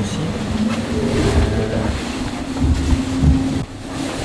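Cabin noise of a racing trimaran at sea: a steady low hum over a rumbling hull, with a few uneven thumps.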